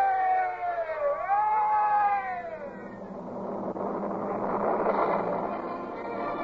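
Boatswain's pipe sound effect: a shrill whistled call that rises, holds, dips briefly, rises and holds again, then falls away, sounding the order to wear ship. It is followed by a swelling rush of noise.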